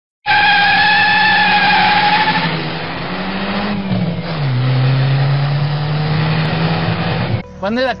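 Car sound effect: a tyre squeal for about the first two and a half seconds, then an engine note that drops in pitch around four seconds in and holds steady. A man starts talking just before the end.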